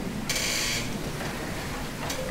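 Swivel chair squeaking as the seated person turns in it: one brief high squeak lasting about half a second.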